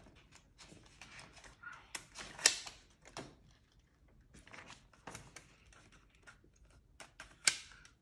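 Pages of a thin paperback book being handled and turned: scattered paper rustles and small taps, with two sharper clicks, one about two and a half seconds in and one shortly before the end.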